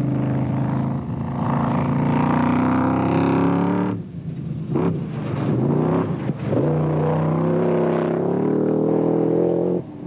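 A BAT off-road race buggy's engine running hard at high revs. The note holds steady, cuts away about four seconds in, then comes back and climbs to a steady high pitch.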